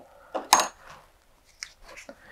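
A few light metallic clicks and a clink of small fly-tying tools being handled on the bench: the sharpest, with a brief ring, about half a second in, and two softer ticks near the end.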